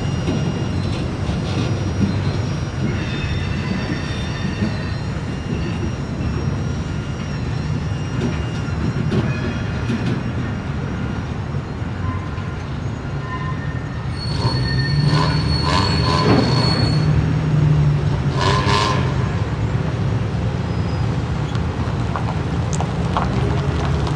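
Norfolk Southern maintenance-of-way work train of camp cars and equipment cars rolling through, a steady low rumble with steel wheels squealing on the rail. From about fourteen seconds in the squealing grows louder and higher, with clanks among it.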